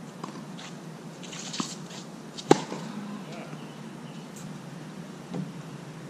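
Tennis ball struck by a racket with a sharp crack about two and a half seconds in, the loudest sound. Fainter hits or bounces come about a second earlier and again near the end, over a steady low hum.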